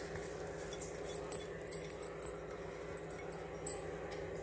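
A few faint clinks of a small steel bowl against a steel mixing bowl as chopped coriander is tipped into batter, over a steady low hum.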